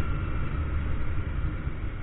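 Honda Grazia 125 scooter being ridden steadily: wind rumbling on the handlebar-mounted microphone over the low noise of the engine and tyres on the road.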